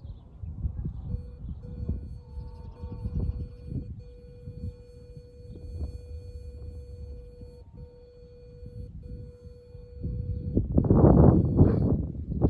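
Steady electronic tone from a dog e-collar, held while stimulation is applied and stepped up a little at a time. It breaks off briefly a few times and stops shortly before the end. Under it runs a low, uneven rumble, and a louder rumbling noise comes in near the end.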